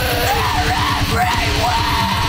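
Heavy rock song with fast, pounding drums and a yelled vocal holding long notes.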